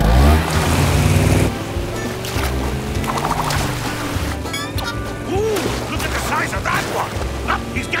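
A cartoon sound effect of a fishing boat's motor surging as the boat pulls away, loudest in the first second and a half, then a steady rush of water and spray from the water-skier, all under background music.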